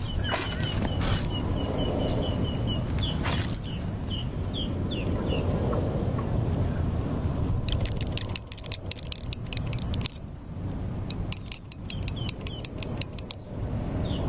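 A metal tool clicking and scraping against the drive gear of a removed starter motor as it is greased, in rapid runs of sharp ticks in the second half, over a steady low rumble.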